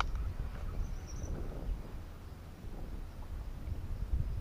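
Wind buffeting the EKEN H9R action camera's microphone, an uneven low rumble, with faint outdoor background and a brief faint high chirp about a second in.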